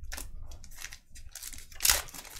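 Foil wrapper of a Panini Revolution basketball card pack crinkling and tearing as it is ripped open: a few short rustles, then the loudest rip near the end.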